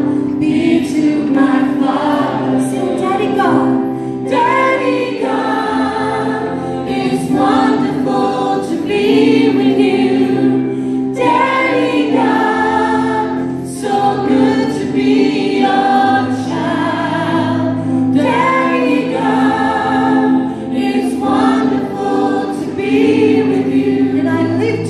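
A group of young children singing a worship song together, led by a woman's voice on a microphone, over musical accompaniment with sustained bass notes.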